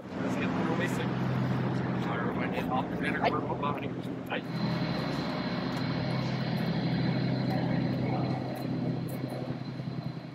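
A steady mechanical drone with a low hum, under indistinct voices. A thin high whine joins about halfway through and holds.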